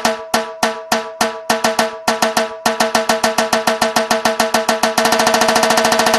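A drum beaten in single sharp strokes that ring at the same pitch, speeding up from about three strokes a second into a fast roll near the end.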